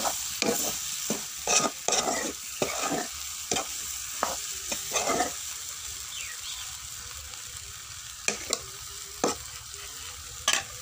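Pork and colocasia sizzling as they stir-fry in a kadai over a wood fire, a steady hiss. Repeated stirring strokes scrape and knock against the pan, quick and frequent in the first half and only a few near the end.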